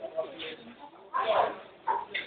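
A dog gives a short bark or whine about a second in, among people's voices.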